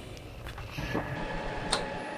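Woodturning lathe running while a hand-held tool cuts a cast-iron tool-rest post: a steady noisy hum with a faint whine and light ticking, and one sharp click near the end. The ticking fits the interrupted cut on the out-of-round casting, which pushes the tool away each turn.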